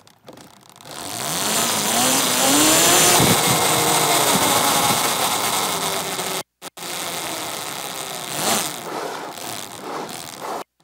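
72-volt electric quad bike's motor accelerating hard: its whine rises and falls in pitch over a hiss of tyre noise, picked up by a radio mic on the quad. The sound cuts out twice briefly a little past the middle, then the whine climbs again near the end.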